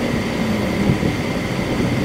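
Steady low rumbling background noise with a faint steady high tone above it.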